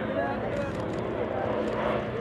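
Spectators talking near the microphone while the Republic P-47D Thunderbolt's Pratt & Whitney R-2800 radial engine drones in the distance, growing louder as the fighter approaches on a low pass.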